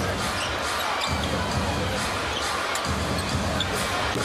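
A basketball being dribbled on a hardwood court, under the steady noise of an arena crowd.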